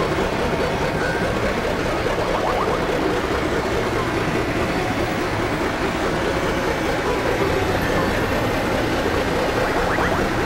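A dense, steady wash of several music tracks layered over one another, blurring into a continuous noisy drone.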